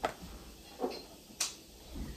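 A few small clicks and taps: a sharp click right at the start, a softer tap a little under a second in, and another sharp click about one and a half seconds in.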